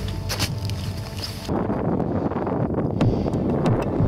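Wind buffeting the camera microphone, getting louder about a second and a half in, over the crunch of boots stepping in snow.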